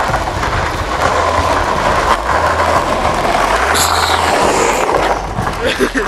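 Skateboard wheels rolling over an asphalt street, a loud steady rumble picked up by an old camcorder's microphone, with a brief high hiss about four seconds in.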